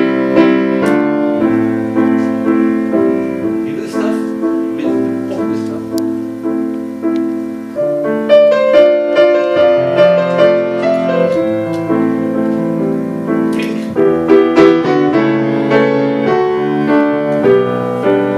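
Yamaha grand piano played acoustically, the hammers striking the strings: a pop melody over repeated sustained chords.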